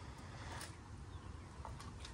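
Quiet outdoor ambience: a faint steady low rumble with a few faint high chirps.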